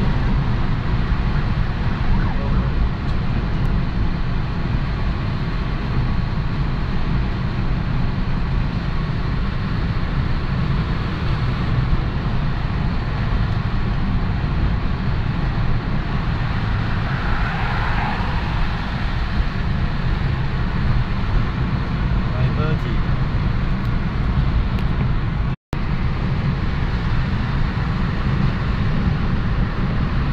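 Steady low rumble of road and engine noise inside a moving car's cabin at highway speed. The sound cuts out for an instant near the end.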